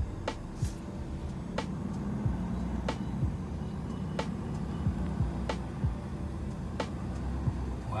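2020 Ford F-250 Super Duty's diesel engine idling, heard from inside the cab, with a sharp light click about every 1.3 seconds.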